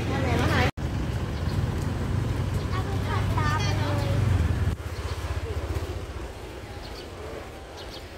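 Outdoor street background with a steady low rumble that cuts off abruptly about five seconds in, and a few brief, faint voices in the middle.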